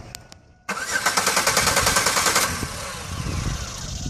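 A van's engine turned over on a start attempt: a loud, fast rattling mechanical noise begins suddenly a little under a second in and eases to a quieter running sound after about two seconds. It is the puzzling starting noise the owner is trying to find the cause of.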